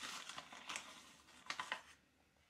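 Plastic bag of glutinous rice flour crinkling while a measuring spoon digs into the flour and scoops some out: a faint run of uneven crackles, with sharper ones near the middle and near the end.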